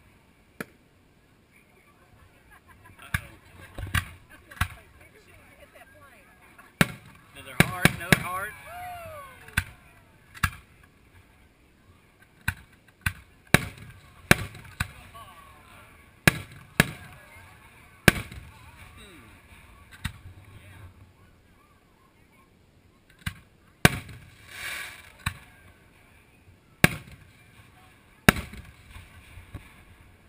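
Aerial firework shells bursting overhead. Sharp booms come at irregular intervals, about twenty in all, with a quick cluster of several around a quarter of the way in.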